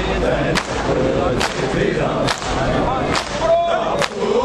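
Crowd of men beating their chests in unison (matam), each stroke a sharp collective slap, evenly spaced a little more often than once a second. A chanted lament from many voices carries on between the slaps.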